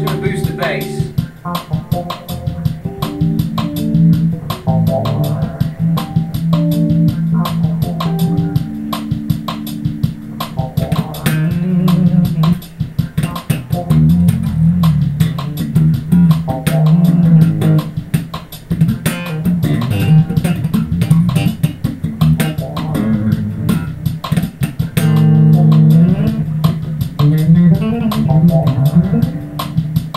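A Ken Smith Burner five-string electric bass, a Japanese-built 1997 instrument, played solo through an amplifier: continuous phrases of low notes with many sharp, percussive attacks.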